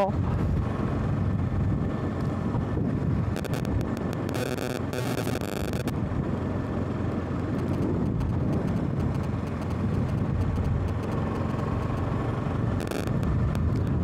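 Motorcycle engine running at a steady cruising speed, with wind rushing over the microphone.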